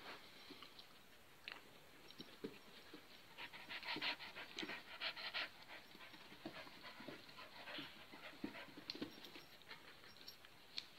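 A dog panting in quick, rapid breaths, loudest about four to five and a half seconds in, with a few soft clicks around it.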